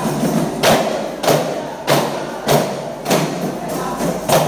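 Aravanas, large one-sided wood-and-hide frame drums, are struck together by a group of players. They beat a steady, even rhythm of about six loud strokes, one roughly every 0.6 seconds, with no singing over it.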